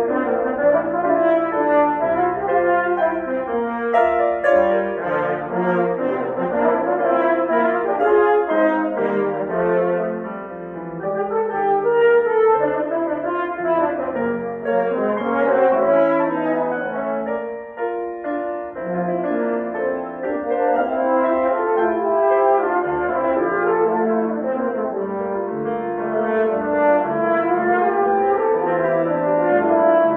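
Two French horns playing together with piano accompaniment, a continuous passage of sustained and moving notes that eases off briefly twice.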